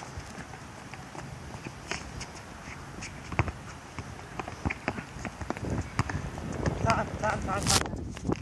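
Sneakers running and scuffing on a hard tennis-court surface, with a soccer ball being kicked and bouncing, giving many short, sharp knocks at uneven intervals. A few short shouts come about seven seconds in, and a loud sharp noise follows just before the end.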